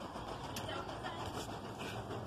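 Steady, faint outdoor background noise, an even hiss with no single clear source.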